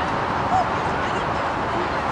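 A single short dog yelp about half a second in, over a steady open-air noise.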